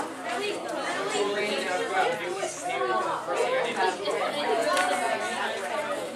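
Many voices talking at once: students' chatter, with no single clear speaker.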